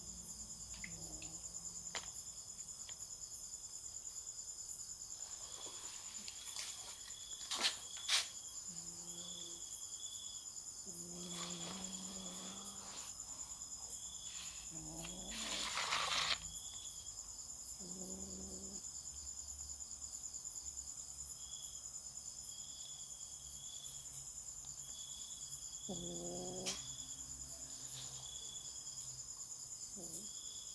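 Steady high chirring of crickets, with several short, low calls from kittens squabbling over a caught gecko, one of them bending in pitch. There are two sharp knocks about 8 seconds in.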